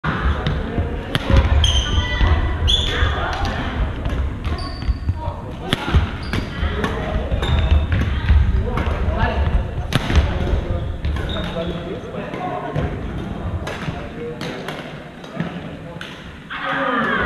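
Badminton rally in a large gym hall: sharp knocks of rackets striking the shuttlecock and of footfalls on the wooden floor, with a few short high shoe squeaks in the first few seconds, all echoing in the hall over a background of voices.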